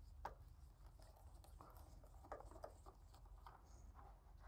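Near silence, with a few faint clicks and taps as a Phillips screwdriver and fingers work screws out of a power tongue jack's plastic cover: one click just after the start and a few more around the middle.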